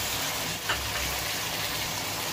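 Chicken and chopped tomatoes frying in oil in a wok, a steady sizzle while a silicone spatula stirs them, with one short spatula scrape a little under a second in.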